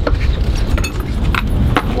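Low rumble of wind buffeting the microphone, with about four light clinks of the fishing tackle scattered through it as the line and lead sinker come up to the boat.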